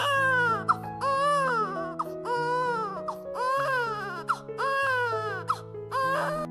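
Newborn baby crying in a string of wails, about one a second, each rising then falling in pitch, over soft background music.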